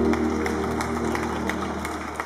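The last held chord of an organ piece dying away under scattered handclapping, with the whole recording fading down.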